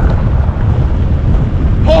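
Wind buffeting a camera microphone held out of a moving car's window, over the rumble of the car's tyres on a dirt road.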